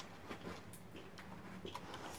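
Quiet room tone with a low hum and faint, irregular small clicks of fingers handling the paper pages of a hardcover picture book.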